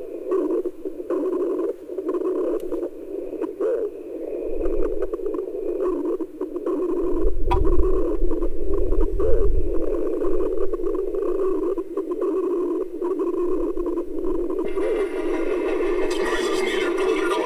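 Experimental noise music made from re-recorded site recordings: a dense, crackling band of mid-low noise with scattered clicks. A low rumble swells in about four seconds in and is strongest in the middle, and a brighter, hissing layer enters near the end.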